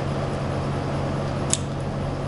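Steady low hum of greenhouse ventilation fans, with one short, sharp click about one and a half seconds in as a grafting knife cuts a bud chip from grapevine budwood.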